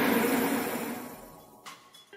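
Whoosh transition sound effect: a rushing noise that fades away over about a second and a half, followed by a short click.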